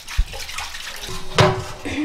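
Tap water running into a stainless steel sink while dishes are scrubbed with a sponge, with a low thump near the start and a sharp knock about one and a half seconds in.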